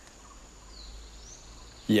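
Quiet rainforest ambience with a faint bird call about a second in, a thin whistle that dips and then rises.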